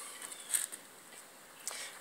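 Faint handling noise: a brief rustle about half a second in and a light click near the end.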